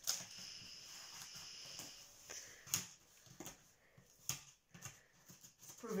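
Pencil point scraping and jabbing at the packing tape on a cardboard box: a faint steady rasp for about the first two seconds, then scattered light taps and clicks.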